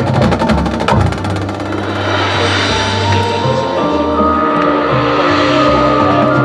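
Marching band playing: a fast passage of rapid drum and mallet-percussion strikes in the first second or so, then the winds enter with long held chords that build in layers about three to four seconds in.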